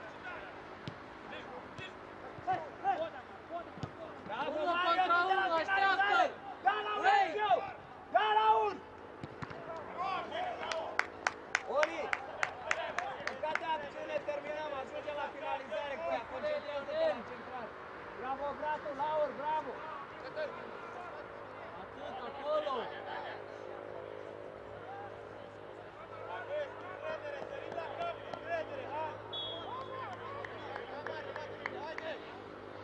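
Football players and coaches shouting to each other across the pitch, loudest in a burst of calls a few seconds in. In the middle comes a quick run of sharp clicks.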